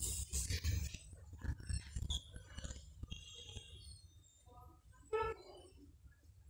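Faint background of a busy shop: indistinct voices over a low hum, with scattered handling clicks and a short voice-like call just past five seconds.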